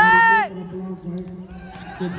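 A man's voice calling out one long shout that drops in pitch as it ends, about half a second in, followed by quieter chatter from the crowd of players and onlookers.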